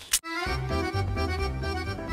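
Background music with sustained chords over a steady bass line, coming in about half a second in after a short sharp click.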